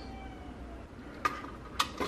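A faint, slightly falling high tone early on, then two sharp clicks about half a second apart near the end as hands take hold of the wiring and terminal block on the remote I/O units.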